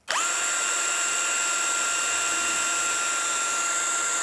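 Cordless drill driver spinning a bullet core chucked in it against an abrasive pad, polishing it. The motor starts abruptly, spins up quickly, then runs with a steady high whine at constant speed.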